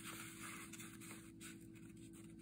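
Faint rustling and rubbing of a sheet of patterned scrapbook paper being folded diagonally and creased by hand, over a low steady hum.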